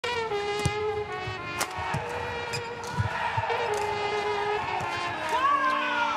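Badminton rally: sharp racket hits on the shuttlecock about a second apart, over long held tones.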